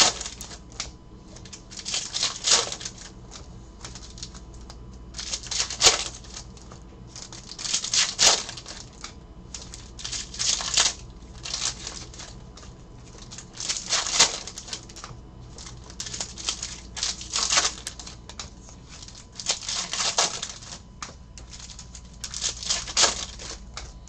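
Foil trading-card pack wrappers being torn open and crinkled by hand. The crinkling comes in repeated bursts every two to three seconds.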